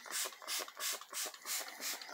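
Plastic trigger spray bottle squirting water in quick repeated pumps, about three hissy spritzes a second.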